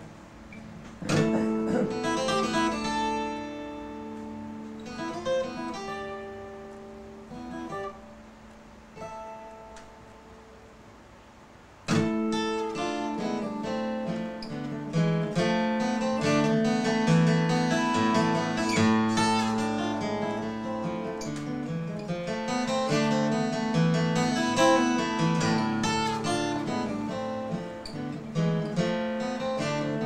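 Solo steel-string cutaway acoustic guitar playing a slow, sparse passage of single notes and chords that ring and fade. About twelve seconds in, a loud chord comes in and the playing turns fuller and denser.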